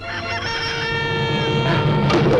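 A rooster crowing, one long drawn-out crow.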